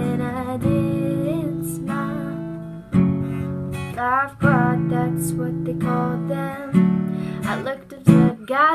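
A song on strummed acoustic guitar, the chords struck afresh every second or so, with short sung phrases from a woman's voice about halfway through and again near the end.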